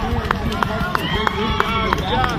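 A cross-country runner's footsteps on grass, about three to four strides a second, as she passes close by, with spectators' voices in the background.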